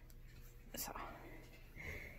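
Quiet room with a steady low hum and one softly spoken, near-whispered word about a second in.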